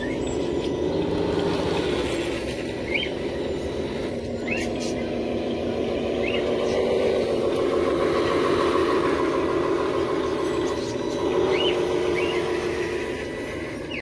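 Electric motors and gearboxes of radio-controlled model trucks whining as they drive, the pitch rising and falling with speed. Short bird chirps come through now and then.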